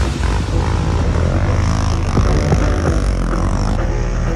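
Quad bike (ATV) engine running under riding load, its pitch rising and falling with the throttle.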